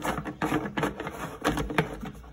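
Perforated plastic intake cap on a diesel air heater being twisted and pulled off by hand: a quick run of plastic clicks and scrapes, loudest about one and a half seconds in.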